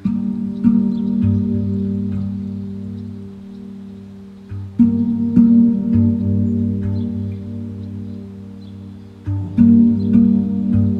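Pandrum, a handpan-style steel drum, struck in three groups of two or three deep notes, near the start, about five seconds in and near the end. Each group rings on and slowly dies away.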